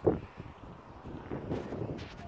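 Wind buffeting a phone's microphone in a low rumble, with a short handling bump just after the start as the phone is turned around in the hand.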